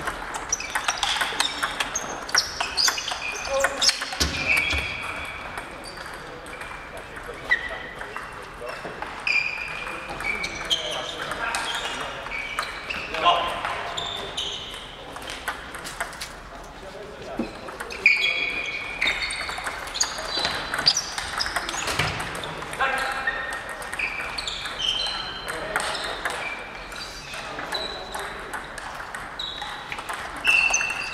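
Table tennis balls clicking off bats and tables, many short sharp knocks in quick runs from several tables at once, ringing in a large sports hall.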